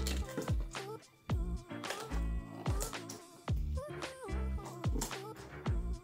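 Background music with a steady beat, bass line and gliding melody, cutting out briefly about a second in.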